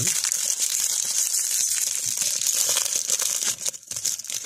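Foil trading-card pack wrapper crinkling and tearing as it is pulled open and handled by hand, dipping briefly near the end.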